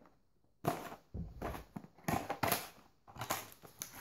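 Cardboard tea box being handled and opened: four short rustling, scraping bursts of packaging.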